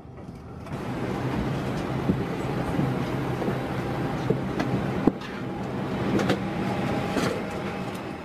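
Airbus A320 cabin noise with the aircraft on the ground: a steady low hum of ventilation, with scattered clicks and knocks and one sharper click about five seconds in.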